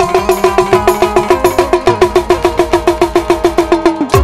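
Tabla played in a fast, even run of pitched strokes, about seven a second, the ringing right-hand drum tuned to one note.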